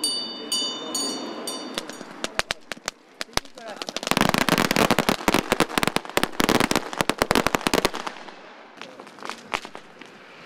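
A string of firecrackers going off: scattered pops at first, then a dense run of rapid bangs for about four seconds, tailing off into a few last pops. Before the firecrackers start, a ringing metallic strike repeats about twice a second.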